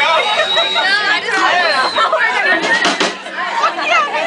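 Several audience voices chattering at once in a club, none distinct. A thin, steady high tone runs through the first two seconds.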